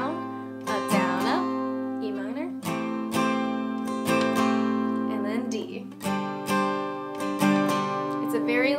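Steel-string acoustic guitar with a capo strummed in a down, down, up, down, up pattern through the G, Cadd9, Em7, D chord progression, changing chord every couple of seconds.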